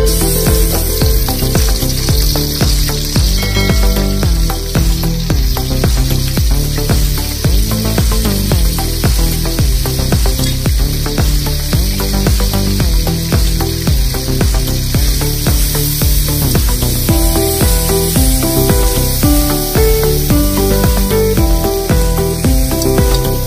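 Chopped onion and spice paste frying in hot oil in an iron kadai, sizzling steadily from the moment they hit the oil, with a metal spatula stirring. Background music plays underneath.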